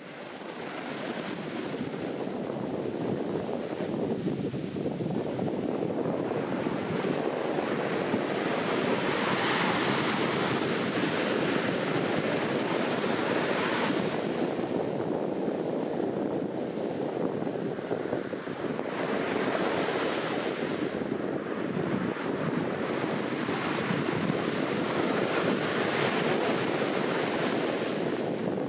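Ocean surf breaking and foam washing up the sand, with wind buffeting the microphone. The wash fades in at the start and swells every few seconds as each wave comes in.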